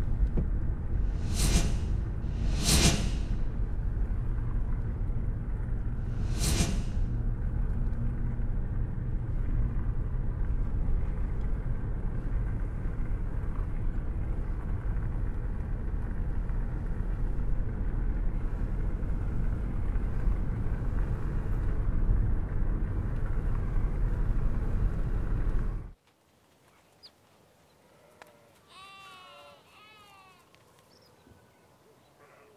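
Steady low rumble of a car driving on a rough country road, with three brief louder bursts in the first seven seconds. About 26 seconds in it cuts off abruptly to quiet open-air ambience, with a faint sheep bleat near the end.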